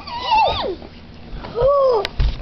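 A young child's short high-pitched whining vocalization that rises and falls, followed about a second and a half in by a drawn-out "Ooh".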